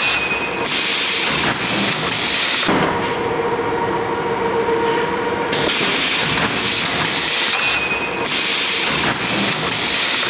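Automated seeding line running: the roller conveyor carrying plastic cassette trays and the seeding machine dropping seed into them, giving a steady mechanical rattle and hiss. A steady motor hum comes through in the middle.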